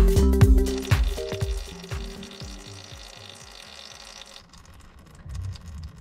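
Background music with a steady beat fading out over the first two or three seconds, then a faint steady hiss of used engine oil streaming from a lawn mower's drain-plug hole into a drain pan, which stops suddenly about four and a half seconds in.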